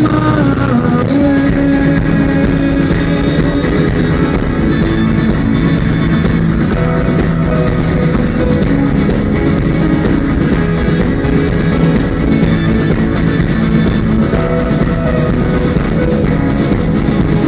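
Live rock band playing an instrumental passage without vocals: electric guitar, bass guitar and drum kit, with keyboards, loud and steady.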